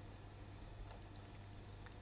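Faint scratching of a felt-tip marker writing words on paper, over a low steady hum.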